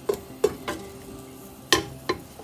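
Chopped carrot and potato pieces sliding off a plate into a stainless steel pot: a few sharp, separate clinks and knocks of the pieces and plate against the metal, the loudest near the end.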